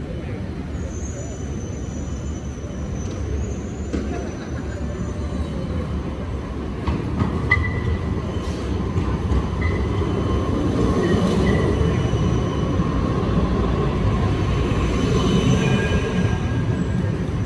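A Siemens Combino tram running along street rails toward the listener, with a thin high wheel squeal in the first few seconds and short metallic squeals later on. Its rumble grows louder from about halfway through as it draws close.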